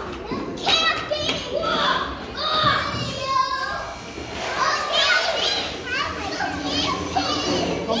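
Many children's voices chattering and calling out at once, a steady hubbub of kids at play in a large indoor room.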